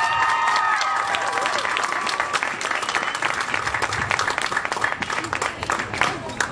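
Audience applauding, with a few voices whooping over the clapping in the first couple of seconds; the clapping thins out near the end.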